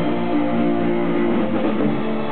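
Live amplified band playing, with electric guitar chords to the fore and no singing.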